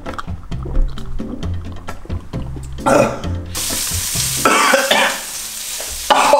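Background music with a low bass line, then, from a little past halfway, a steady sizzle of food frying in a pan as it is stirred.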